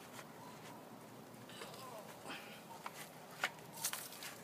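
Quiet rustling and scuffing of clothing and garden soil as a person gets up from kneeling in a planting bed, with a faint murmured voice about halfway through and two sharp clicks near the end.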